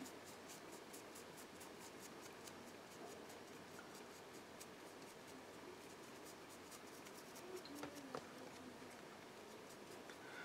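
Faint scratching of a stiff dry brush's bristles flicked quickly over a plastic miniature's textured surface, with a few small ticks about three-quarters of the way through.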